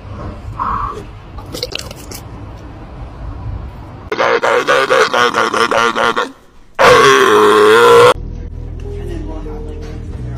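Sea lion vocalising: a rapid, rattling run of barks in the middle, then one loud, long call with a wavering pitch about seven seconds in. Background music runs under it.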